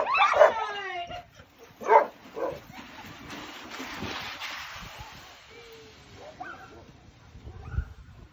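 Excited sled dogs (huskies) yelping and barking as the harnessed team sets off on a run. The calls are loudest in the first couple of seconds, then fade to scattered faint yips as the team moves away.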